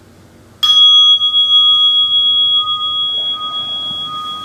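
Meditation bell struck once about half a second in, ringing on with two clear steady tones, one high and one higher, that fade slowly: the signal closing the sitting.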